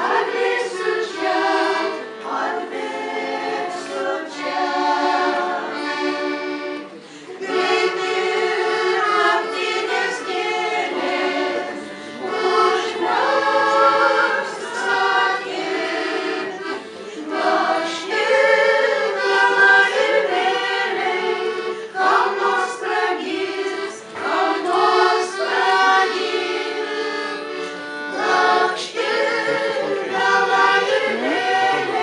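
Women's vocal ensemble singing a song together in parts, accompanied by piano accordion. The phrases run on with only short breaths between them.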